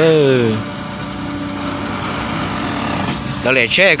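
A heavy semi-trailer truck's engine running steadily, a continuous hum between bursts of talk.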